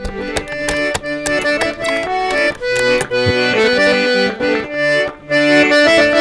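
Piano accordion playing a tune: sustained chords under a melody whose notes change several times a second, with a brief break about five seconds in.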